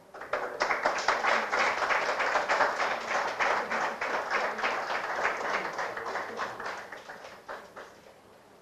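Audience applauding, starting about half a second in and dying away over the last two seconds.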